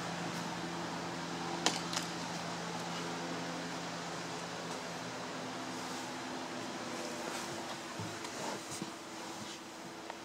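A steady low mechanical hum, like a ventilation fan, with two sharp clicks about two seconds in and a few soft knocks near the end from the car door being opened and someone climbing into the driver's seat.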